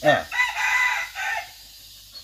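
A rooster crowing once: a single call of about a second and a half, in several linked parts.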